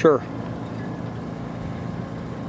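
A man's voice says "sure", then steady, even background noise with no distinct events.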